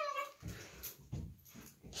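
German Shepherd puppy giving a short whine that falls slightly in pitch at the start, then a few soft thumps and rustles as it scuffles and tugs at bath towels.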